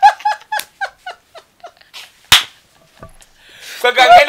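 Hearty high-pitched laughter: a rapid run of short 'ha' bursts that fades away over about two seconds. One sharp smack follows about halfway through.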